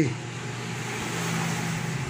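Steady rushing background noise that slowly grows louder, over a low steady hum.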